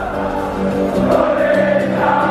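Background music with a choir singing long, held notes.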